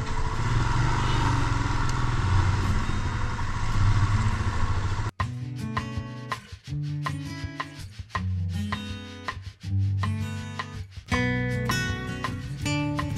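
A motorcycle engine runs under road and wind noise on a helmet camera. About five seconds in it cuts off abruptly to acoustic guitar music, with plucked and strummed notes.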